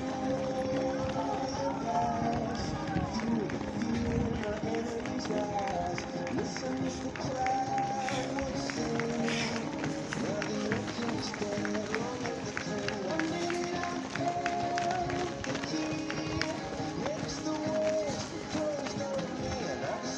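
Footfalls of many runners in running shoes on asphalt as a pack passes close by, thickest around the middle, heard under steady music and voices.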